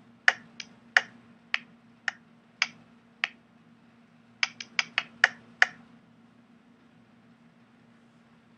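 Chalk tapping and clicking against a chalkboard as a heading is written: seven sharp taps about half a second apart, then a quicker run of six, then only a faint steady low hum.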